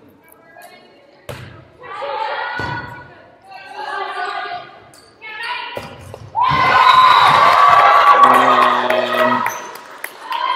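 Volleyball play in a school gymnasium: ball hits and players' voices calling out, then loud shouting and cheering from players and spectators from about six seconds in as a rally ends in a point.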